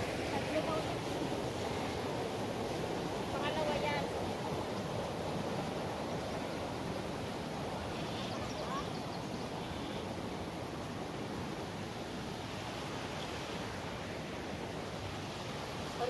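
Steady outdoor rushing noise, like running creek water or wind, with no distinct events.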